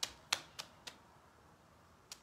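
Four short, sharp clicks spread over about the first second.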